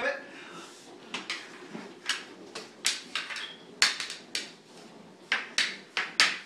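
Floor hockey sticks clacking and knocking on a tiled floor as play goes on: a run of sharp, irregular knocks, some close together, about a dozen in all.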